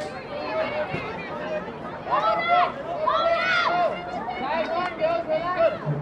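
Several voices shouting and calling out across an open playing field, overlapping one another, with a few long, high calls loudest from about two to four seconds in.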